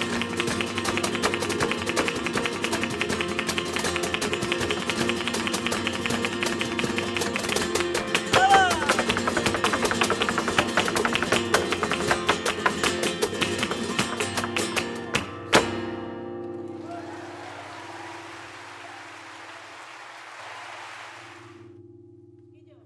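Live flamenco alegrías: guitars, rhythmic hand-clapping (palmas) and percussion in a dense driving rhythm, with a voice calling out briefly near the start and again about eight seconds in. About fifteen seconds in the music stops on a sharp accent, and a held chord fades away under a steady hiss.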